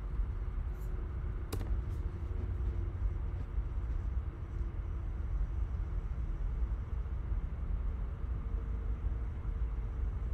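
Steady low room rumble with a faint hum, and a single sharp click about a second and a half in.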